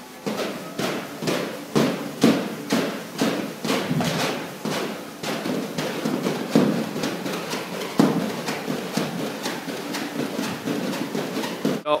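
Heavy training rope (battle rope) slapping the floor in a steady rhythm, about three strikes a second, with music playing faintly underneath.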